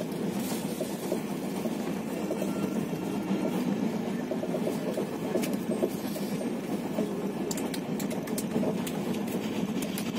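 Moving passenger train heard from inside the carriage: a steady rumble with rapid, even clatter of the wheels on the rails, and a few faint sharper clicks.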